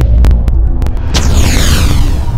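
Logo-animation sound effect: a loud, deep bass rumble with a throbbing hum, joined about a second in by a sweeping whoosh, with scattered sharp clicks.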